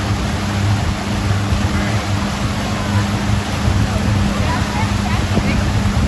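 Motorboat engine running at a steady high drone while towing, over the rush of churning water and wake.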